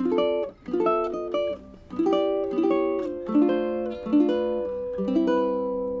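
Kanile'a 'Galaxy' custom ukulele played fingerstyle: a short phrase of plucked chords, the last one left ringing near the end.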